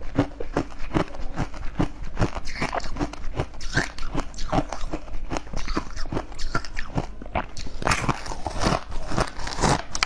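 Close-miked soft green jelly making a dense run of quick wet, sticky clicks and squelches as it is handled and eaten.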